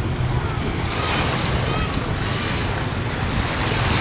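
Small waves washing in over a shallow, rocky shoreline, a steady rush of surf with wind rumbling on the microphone.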